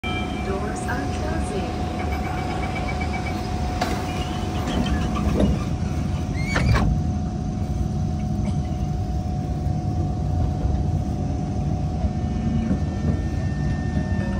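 A Kawasaki C151 MRT train standing at a station platform, with a steady hum from the stopped train, voices in the background, and a brief rising whine about six and a half seconds in.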